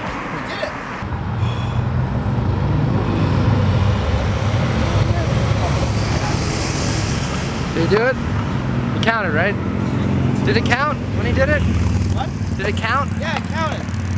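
Street traffic, with a vehicle's engine running nearby as a steady low rumble. Over the second half, a person's voice makes short rising-and-falling sounds.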